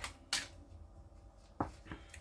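Two short, sharp taps about a second and a half apart, with quiet kitchen room tone between them. They are handling noises from unwrapping a steamed pudding basin's foil and greaseproof paper cover at the worktop.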